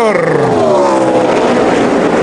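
NASCAR stock car V8 engine heard over the race broadcast, its pitch falling steadily for about a second and a half, then levelling off.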